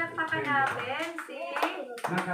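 A short round of hand clapping, several sharp claps, with voices talking over it.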